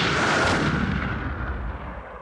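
Intro sound effect: a rumbling, explosion-like burst of noise that fades away over about three seconds.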